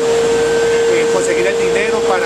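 Steady machine drone holding one mid-pitched tone, from machinery running in an industrial trade-fair hall, with people's voices over it.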